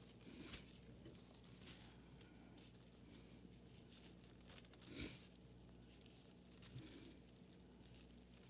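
Faint rustling of thin Bible pages being turned to look up a verse, a few short rustles with the most distinct one about five seconds in, over a low steady hum.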